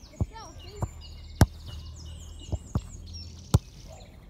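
Sharp thuds of a football being kicked on a grass pitch, the two loudest about a second and a half in and again near the end, with fainter knocks between. Birds chirp in the background.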